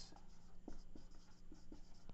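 Marker pen writing on a whiteboard: faint, irregular short strokes and scrapes as a word is written.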